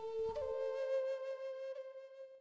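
A solo flute plays quietly, one held note rising to a slightly higher held note about a third of a second in. This is the flute track with a 6 dB equaliser cut at 600 Hz to remove its low-mid drone.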